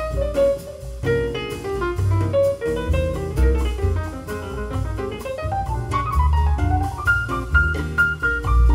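Jazz recording with piano, double bass and drums, played through Tannoy Kensington GR loudspeakers driven by a Manley Neo Classic 300B tube preamplifier and picked up by a microphone in the listening room. Runs of piano notes over a walking bass, with cymbal strokes throughout.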